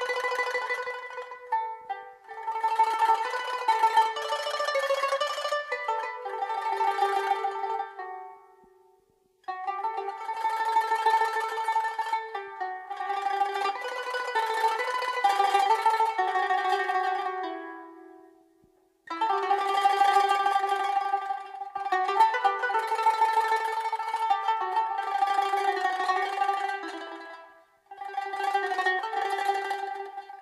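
Armenian folk-instrument ensemble with qanun playing music of quick plucked-string notes. The music comes in long phrases, broken three times by a brief pause.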